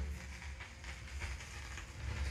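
Stylus riding the run-out groove of a 45 rpm vinyl single on a Technics turntable after the music ends: faint surface crackle with scattered light ticks over a low rumble.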